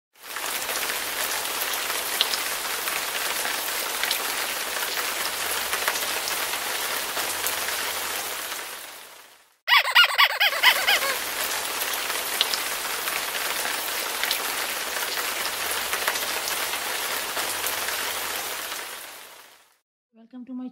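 A steady rain-like hiss fades in, then fades out just before halfway. It starts again with a brief run of quick high-pitched notes, and the hiss fades out again near the end.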